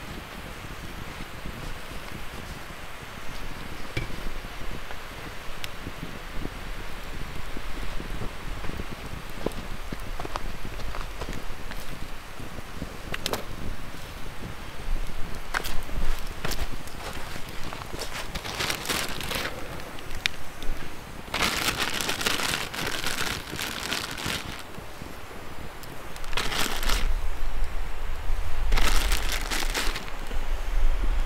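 Wood campfire crackling with scattered sharp pops. In the second half come several bursts of rustling and plastic-bag crinkling as a wire grill grate is set over the coals and food is handled.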